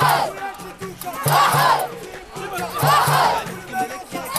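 Crowd of football supporters shouting a chant together, one loud shout about every second and a half, over a steady rhythm beaten on a frame drum.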